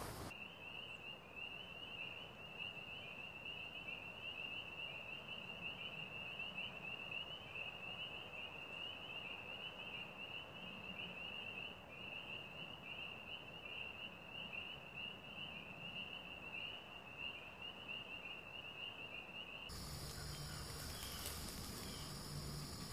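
An insect trilling continuously, a high, evenly pulsing trill, over a faint background hiss. It cuts off near the end as a different background comes in.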